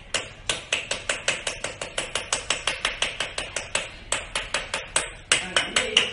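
Large kitchen knife chopping rapidly through a bundle of long hair, the blade knocking on a ceramic tile floor about four or five times a second, the knocks getting louder near the end.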